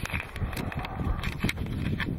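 Handling noise from a handheld camera being swung and moved in among the leaves of a shrub: irregular bumps and clicks on the microphone over a low rumble, with leaves rustling.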